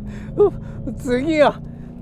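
A person's short gasp and then a longer cry that falls in pitch, inside a car over the steady drone of its engine.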